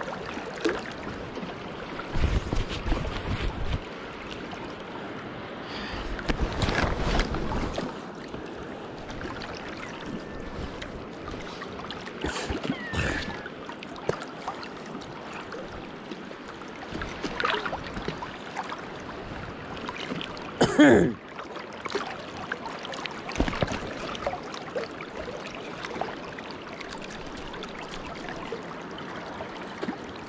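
Steady rush of the Kenai River's current around a wading angler, with low buffeting on the microphone twice in the first eight seconds and one brief, loud sound about two-thirds of the way through.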